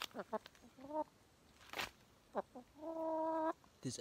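Domestic hen clucking: a few short calls sliding in pitch, then a longer, steady call about three seconds in, with a single sharp click in between.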